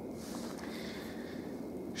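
Faint, steady outdoor background noise in a snowy forest: a low even hiss with no distinct events.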